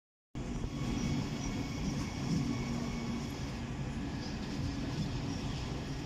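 Siemens Desiro HC electric multiple unit (class 462) coming slowly into a station platform: a steady low rumble of wheels and running gear, with a faint hum.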